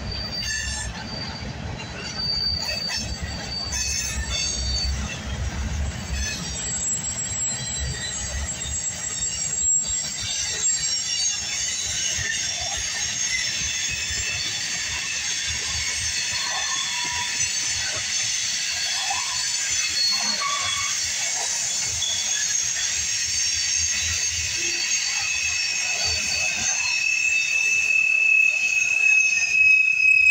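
Freight train cars rolling past, boxcars and then tank cars, with a low rumble of wheels on rail over the first few seconds. The wheels then squeal in several steady high tones that build through the second half, one strong tone coming up near the end.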